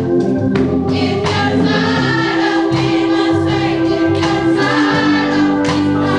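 Church choir singing a gospel song with accompaniment, in long held notes.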